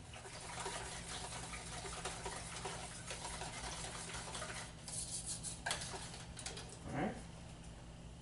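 Wire whisk stirring thin pancake batter of liquid egg white, pancake mix and protein powder in a mixing bowl, a soft steady swishing with a few light clicks of the whisk against the bowl about five to six and a half seconds in.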